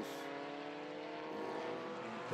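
Engine of a small single-seater race car running under power, a steady engine note that rises slightly in pitch.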